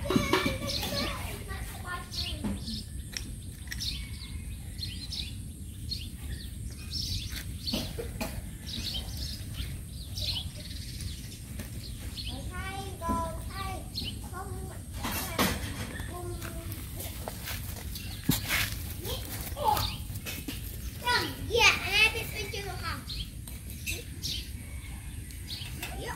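Outdoor village ambience: children's voices in the distance, with birds chirping and a steady low background rumble.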